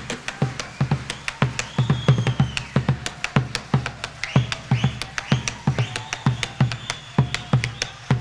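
Instrumental passage of a chacarera: a cowhide bombo legüero beats the rhythm, sharp rim clicks and deep head thumps several times a second, with guitars and a high, sliding melody line over it.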